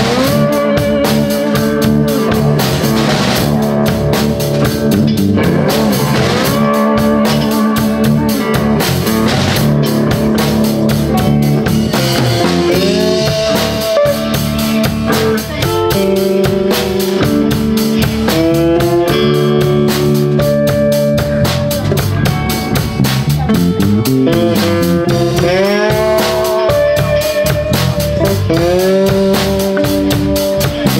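Live electric blues band playing an instrumental passage: electric guitars over a drum kit, with a lead guitar holding notes and bending them up several times.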